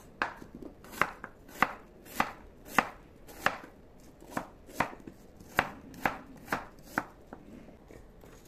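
Kitchen knife chopping peeled fruit into chunks on a wooden cutting board: about a dozen sharp knocks of the blade on the board, roughly one every half second, stopping about a second before the end.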